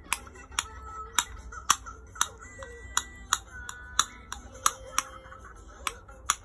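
A series of sharp clicks or taps, about two a second and unevenly spaced, over faint background music.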